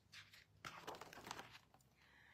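A picture book's page being turned: a faint rustling and crinkling of paper.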